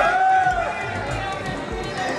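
A raised voice calling out in one long rising-and-falling call near the start, then loose crowd chatter, over background music with a steady low beat.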